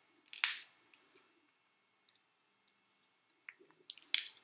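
Plastic raft cracking and snapping as it is peeled by hand off a 3D-printed part: one sharp crack about half a second in, then scattered small clicks that pick up near the end.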